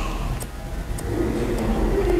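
Barber's scissors cutting hair held between the fingers: about three faint, quick snips, over a low steady hum.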